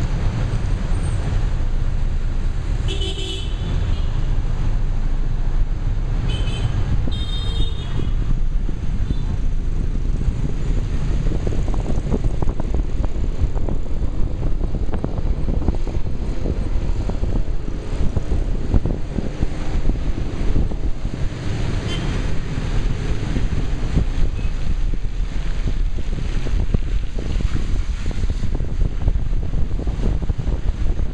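City traffic heard from inside a moving taxi: a steady low rumble of the car and road. Vehicle horns beep about three seconds in and again a few times around six to eight seconds in.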